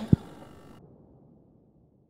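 A sharp click with a low thump just after it, then a reverberant tail that fades away. The upper part of the tail cuts off abruptly under a second in.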